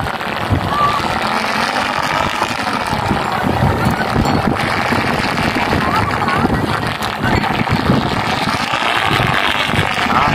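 A 3.3 m two-line sport delta kite tearing through strong wind, its sail and lines making a steady rushing whir, mixed with wind buffeting the microphone.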